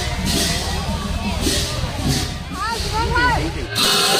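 Low, steady engine rumble from slow procession vehicles, a mini truck and tractors, under voices and music. The rumble cuts off abruptly near the end as music with long held notes takes over.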